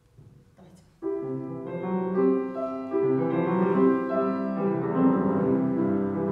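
Grand piano starting to play about a second in: a classical accompaniment introduction of held chords and moving notes, played alone before the voice enters.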